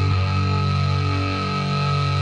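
Amplified, distorted cellos playing heavy metal live, holding a steady low sustained chord.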